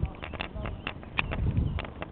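Footsteps on grass close to the microphone: an irregular series of soft thumps and clicks, about seven in two seconds, over a low rumble.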